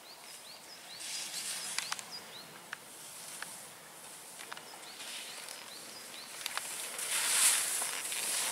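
Skis sliding and scraping over snow, a hiss that comes and goes with each turn and is loudest near the end as the skier comes close. Sharp clicks and a run of short high chirps sound through it.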